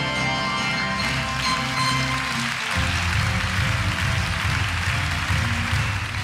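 Live band music led by a grand piano, with upright bass, drums and a horn section. About halfway through the music changes to a fuller, busier passage with a pulsing low end.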